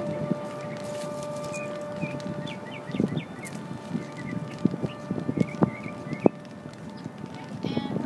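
Footsteps of people walking on a paved sidewalk, an irregular run of knocks mostly in the middle seconds, with birds chirping in the background.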